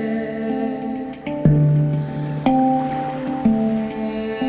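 Handpan being played: single struck notes that ring on, about one a second, with a deep low note about a second and a half in, under a woman's soft wordless vocal.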